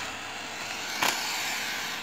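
Steady background noise with a single sharp click about a second in.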